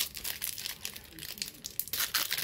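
Foil wrapper of a Pokémon TCG Roaring Skies booster pack crinkling and tearing as it is ripped open by hand, a dense run of sharp crackles.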